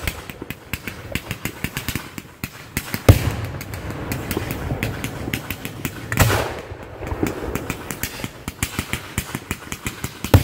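Fireworks launching at close range: a loud thump about three seconds in and another about six seconds in, with dense crackling and popping in between.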